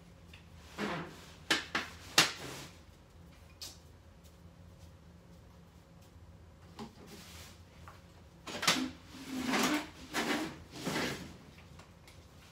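Household items being handled and moved during cleaning: a few sharp knocks about one to two seconds in, then a run of longer, noisier handling sounds near the end.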